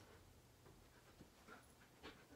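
Near silence: room tone with a few faint soft sounds from a Siberian husky sitting close by, waiting for a treat.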